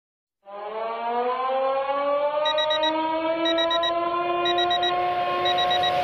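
Siren-like sound effect opening a song: a wavering tone with a stack of overtones that slowly rises in pitch and then holds steady. About two seconds in it is joined by quick high beeps in groups of four, once a second.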